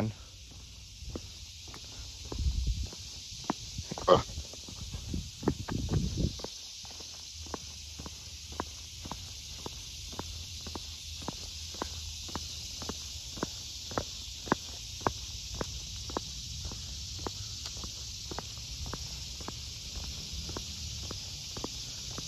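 Footsteps of a person walking at a steady pace on a paved path, about two steps a second, over a steady high hiss.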